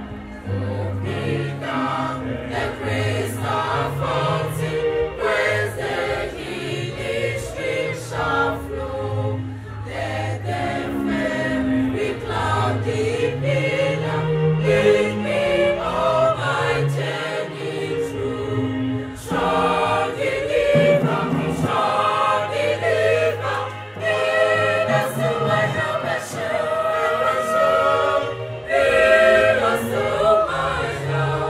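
Choir singing together in several voice parts, in phrases with brief breaths between them.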